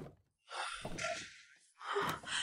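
A woman's single breathy gasp, starting about half a second in and lasting about a second.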